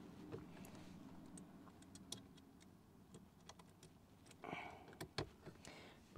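Near silence with a few faint, small plastic clicks as a 20 amp blade fuse is pushed into its slot in a plastic fuse box.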